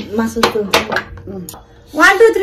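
Forks and a glass bowl clinking against dishes on a glass-topped table: a few sharp clinks within the first second and a half.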